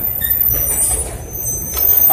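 Low, steady rumble of road traffic on a city street, with a faint high whine briefly about halfway through.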